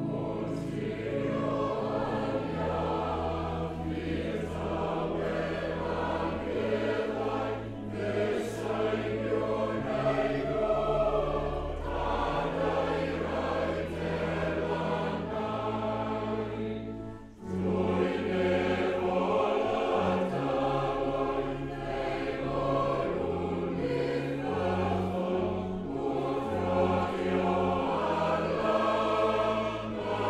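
Choir singing a Welsh hymn over held low notes, with a brief pause just past halfway before the singing picks up again.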